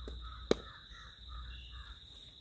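A bird calls in a run of about six short, harsh caw-like notes, over a steady high insect whine. About half a second in, a single sharp click cuts through as a kitchen knife strikes into a breadfruit.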